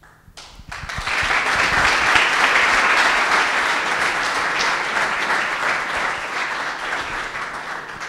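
An audience applauding in a lecture hall, building up within the first second, holding steady, then dying away near the end.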